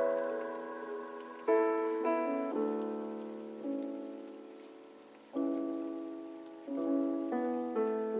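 Lo-fi chillhop music: soft piano chords, each struck and left to fade before the next, a new chord every one to two seconds, with no drums or bass.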